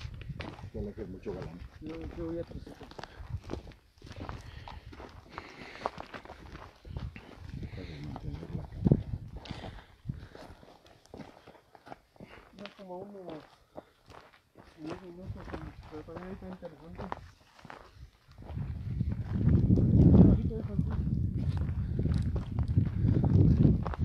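Footsteps on loose stones and gravel along a rocky trail, a steady run of short crunches with some faint talk. A loud low rumble takes over from about three quarters of the way through.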